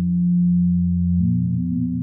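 Low synthesizer drone of a film score: several deep steady tones held together, with further tones joining a little over a second in.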